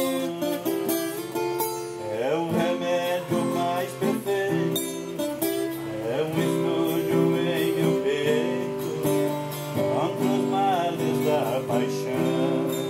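Acoustic guitar music, plucked and strummed chords played steadily.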